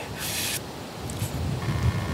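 A man's short, breathy exhale, heard as a brief hiss about a quarter second in, then faint low background.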